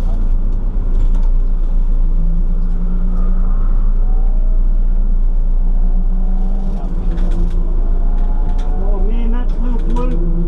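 A car engine running steadily, its pitch shifting slightly, with muffled voices near the end.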